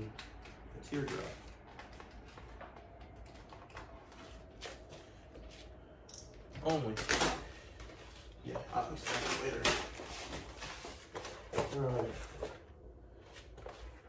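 Vinyl wrap film being handled and pressed onto a car body panel with a squeegee: short scratchy strokes and crinkling rustles, with an indistinct voice heard a few times.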